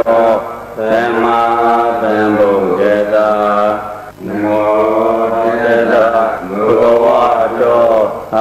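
A Buddhist monk chanting Pali paritta verses, one male voice in long held melodic phrases, pausing briefly for breath about a second in and again about four seconds in.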